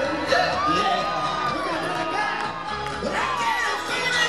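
Live pop music through a concert sound system, with the audience cheering and whooping over it.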